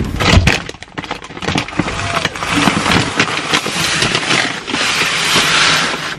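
Plastic bags and sacks crinkling and rustling as they are handled, with a steady run of sharp crackles and a few knocks.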